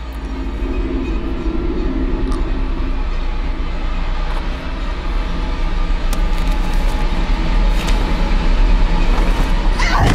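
Horror-film sound design: a loud, low rumbling drone that swells steadily louder. A held mid-pitched tone sits over it in the first few seconds.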